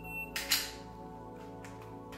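Shot timer start beep, a steady high-pitched tone that ends about a quarter second in. It is followed at once by two sharp, loud noisy sounds as the draw starts, then a few faint clicks, all over background music.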